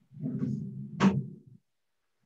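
A person's low, soft voice, a muffled hum or chuckle lasting about a second and a half, with a brief click about a second in.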